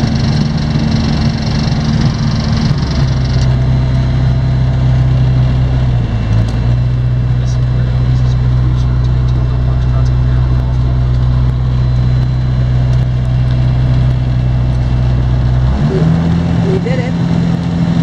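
SportCruiser light aircraft's Rotax 912 engine and propeller running at low taxi power, heard from inside the cabin. The engine note drops a few seconds in as the throttle comes back, runs steady, and picks up again near the end.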